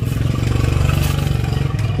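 An engine running steadily, a low pulsing drone, with light handling noise from the melon vine and twine.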